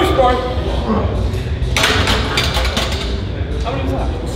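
A man's voice briefly at the start without clear words, then a second-long noisy rush about two seconds in, over a steady low gym hum.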